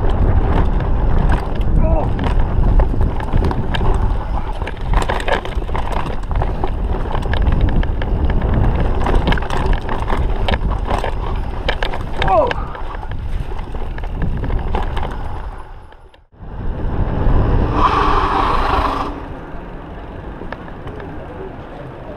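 Mountain bike ridden fast down a dirt forest trail: wind rushing over the microphone, with tyre rumble and rapid rattling and clicking from the bike over rough ground. About sixteen seconds in the noise cuts off sharply, and quieter, steadier noise follows.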